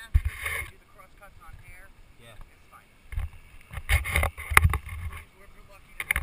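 Gusts of wind buffeting the head-camera microphone, mixed with rustling and handling noise as the nylon parachute canopy is gathered up off the grass. The loudest bursts come at the very start and again about four seconds in, with faint voices in between.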